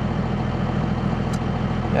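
Cummins 5.9-litre inline-six turbodiesel in a 2001 Dodge Ram idling steadily, heard from inside the cab.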